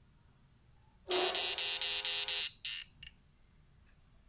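A homemade pulse-chopped push-pull inverter gives a loud, high electronic buzz. It starts about a second in, pulses rapidly and evenly for about a second and a half, then comes back in a short burst.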